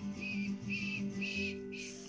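Acoustic guitar strummed in an even rhythm of about two strokes a second, dying away in the last half second.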